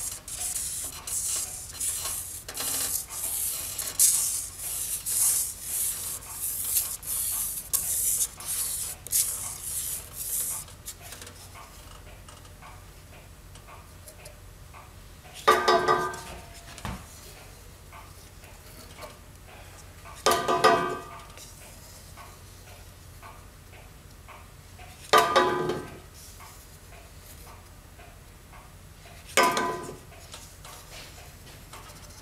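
A wooden paddle scraping and stirring in a steel pot of molten tin-based babbitt, skimming off the dross, for about the first ten seconds. After that come four short ringing metallic knocks about five seconds apart.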